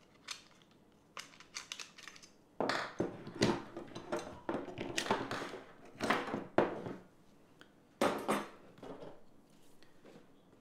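Camera accessories and cardboard packaging being handled on a desk: a few faint clicks, then a run of louder scrapes and knocks from about two and a half seconds in.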